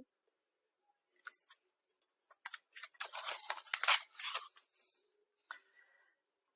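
A picture-book page being turned by hand: a run of short, crisp paper rustles and crackles lasting a few seconds.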